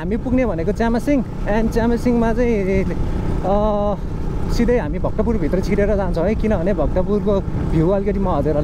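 A man's voice speaking or half-singing over the steady low rumble of a motorcycle under way, with wind noise.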